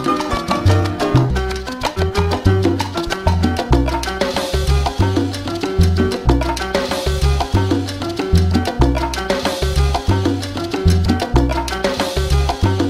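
Instrumental Cuban salsa: a band plays a repeating syncopated bass line under pitched instrument lines and busy percussion, with no vocals.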